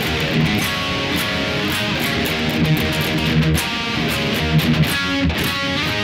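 Electric guitar, tuned a half step down, playing a rock riff of palm-muted sixteenth-note chugging on the open sixth string alternating with power chords. It is picked sloppily so the pick also catches the neighbouring fifth string, which makes the riff sound cluttered ("gochagocha") and hard to make out.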